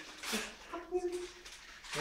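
Quiet voices murmuring, with a brief crinkle of newspaper about half a second in as it is peeled off wrapped cutlery.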